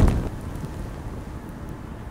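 A heavy thud at the very start, fading into a low, steady rumble.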